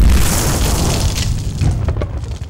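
Explosion sound effect: a loud boom's low rumble with scattered crackles, slowly dying away near the end.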